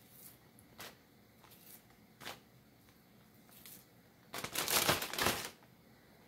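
Plastic zip-top bag crinkling and rustling as slices of raw beef are dropped into it, a few faint rustles at first, then a louder stretch of crinkling lasting about a second, starting about four seconds in.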